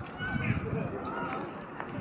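Distant voices of several people calling out, over a steady outdoor background noise.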